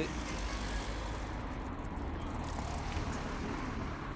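Steady street traffic noise from a car driving by, with a low rumble of wind on the microphone of the moving rider.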